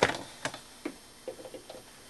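A few light clicks and taps from handling a multimeter's test leads as they are put across the cell's plates. The sharpest click comes right at the start, two more follow within the first second, and a run of small ticks comes about halfway through.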